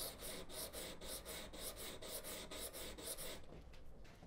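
Steel chip carving knife blade stroked quickly back and forth on 400-grit sandpaper laid on a glass tile, giving an even rhythm of scraping strokes, about four or five a second, that stops about three and a half seconds in. The edge is held at a 10-degree angle to raise a burr.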